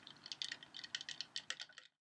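Faint, irregular light clicks and rattles of drinking vessels being handled and raised in a toast, a glass tumbler and a lidded plastic cup. The sound stops just before the end.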